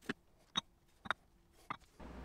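Cast-iron weight plates being unhooked from a creep-test rig and set down: four short, sharp knocks and clinks spread over about two seconds.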